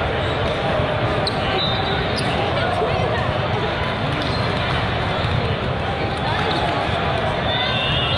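Steady din of a large hall full of volleyball play: balls being hit and bouncing on the courts, under a steady babble of voices from players and spectators.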